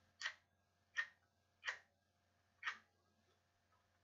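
A wooden match struck against the side of its matchbox four times in about two and a half seconds, each strike a short scratch.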